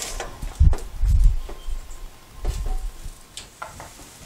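A metal sheet pan sliding onto an oven rack and the oven door being shut, a few low thuds and knocks, followed by light footsteps and clicks.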